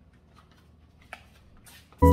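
Faint handling sounds of decorations being set on a windowsill: a few light clicks, the sharpest about a second in, and a short rustle near the end, over a low room hum.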